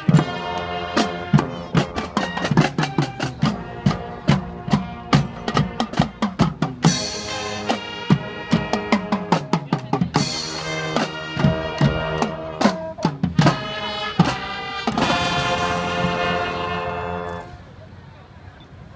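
Marching band playing: snare, tenor and bass drums beat a fast rhythm under brass chords from trumpets and sousaphones, with cymbal crashes about seven and ten seconds in. The band then holds one long chord and cuts off sharply near the end.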